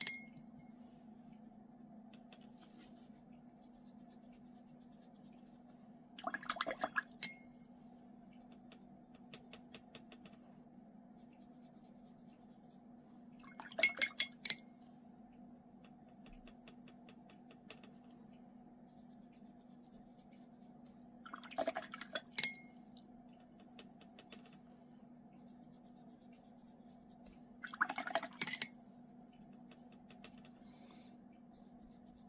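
A paintbrush rinsed in a glass water jar between colours: four short bursts of swishing and clinking against the glass, several seconds apart, the second the loudest, over a faint steady hum.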